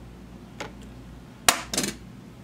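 Hard plastic objects knocking together as a plastic utility knife is lifted off a kitchen scale's acrylic platform: a faint click, then a sharp clack about a second and a half in, followed by a brief rattle.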